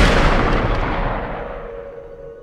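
A single heavy rifle shot whose long, echoing tail dies away over about two seconds.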